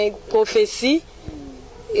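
A voice speaking briefly during the first second, then a quieter pause with a faint low falling tone.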